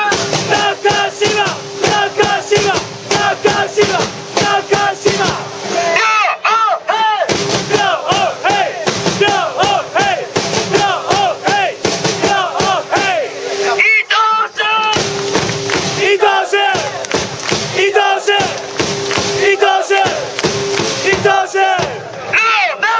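A football supporters' section chanting in unison, many voices shouting short rhythmic phrases over a steady beat. The beat drops out briefly twice, about six and fourteen seconds in, while the chanting goes on.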